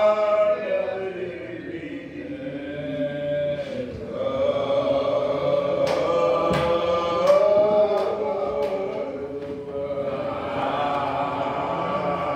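A preacher's chanted, sung-style preaching: a man's voice intoning long held notes that slowly rise and fall, with other voices joining in. A few sharp percussive hits come about six to eight seconds in.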